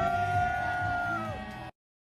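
Live band music with a steady bass beat, over which a voice slides up into one long high held note. The sound cuts off abruptly near the end, leaving dead silence.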